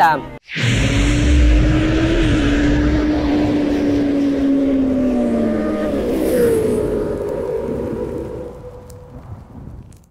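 Intro sound effect of a sport motorcycle engine. It starts suddenly with a low rumble and hiss, then holds a steady note that drops in pitch about five seconds in, like a bike passing by. It fades out over the last two seconds.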